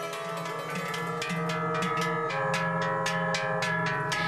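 Instrumental Appenzell folk music: many quickly struck, ringing notes over a steady low held note.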